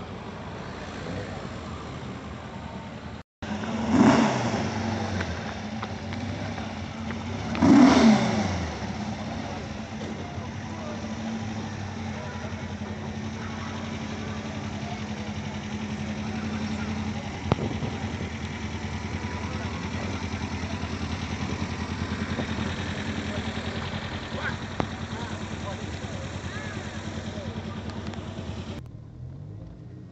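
Two cars pass by at speed about four and eight seconds in, each loud and dropping in pitch as it goes past. After that, a car engine idles steadily close by, with people talking in the background.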